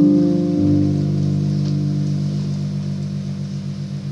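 Live band instrumental music: a sustained chord that changes about half a second in, then pulses about five times a second as it slowly fades.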